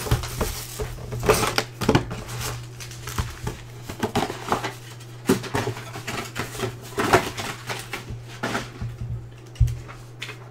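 Clear plastic shrink-wrap crinkling and crackling as it is torn off a box of trading-card packs and handled, in irregular bursts. A low steady hum runs underneath, and a single knock comes near the end.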